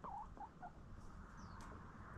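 Hens giving a few short, soft chirping clucks in the first half-second or so, faint over a steady background hiss, with a thin high chirp about halfway through.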